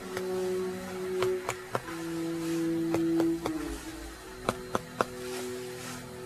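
Background music of soft held notes, with sharp taps in small groups of two or three as a finger strikes another finger laid flat on the back of the chest: clinical chest percussion.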